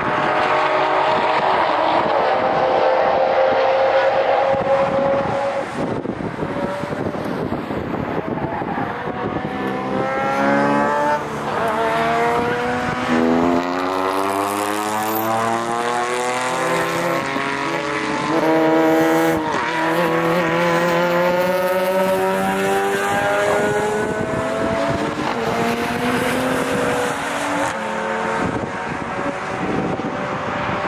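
Several cars' engines running hard around a track, their pitch repeatedly climbing under acceleration and dropping back, with more than one engine heard at once.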